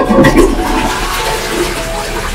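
Toilet with an electronic bidet seat, flushed from a wall-mounted push-button panel: a sudden rush of water starts right as the button is pressed, loudest in the first half second, then settles into a steady swirling wash.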